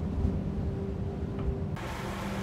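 Ship at sea: a low steady rumble with a hum. A hiss of wind and water comes in near the end.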